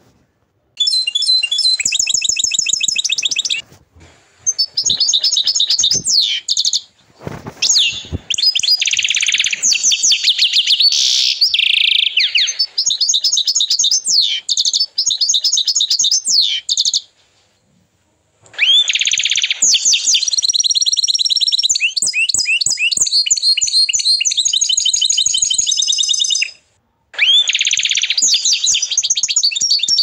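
Domestic canary of the agate colour variety singing long, high-pitched phrases of rapid trills and rolling notes. The song breaks off briefly about four seconds in, again around seventeen seconds, and just before the end.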